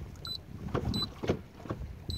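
Lowrance HDS-5 Gen2 chartplotter beeping as its keys are pressed to page through the menu: two short, high beeps about a quarter second and a second in. A few soft knocks and a low background rumble lie under them.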